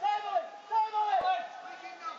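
Men's voices shouting on a football pitch during play: two calls, the second longer and falling away at its end.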